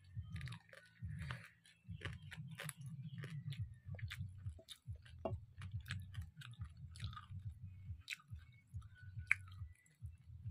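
Close-up chewing of a fried fish head eaten by hand, a steady run of chews with short breaks and many sharp wet mouth clicks.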